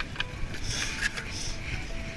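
Footsteps crunching in very cold snow, a few steps, over a low rumble of wind on the microphone.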